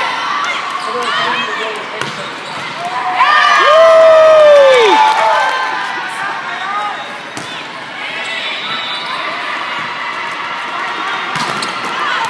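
Players and spectators calling out and shouting in a large hall during a youth volleyball match. One loud, drawn-out call rises and falls about four seconds in, and a few sharp thuds of the ball are heard.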